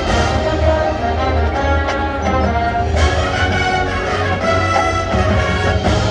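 Marching band of brass and drums playing a loud, full-band passage, with sharp accented hits at the start and again about three seconds in.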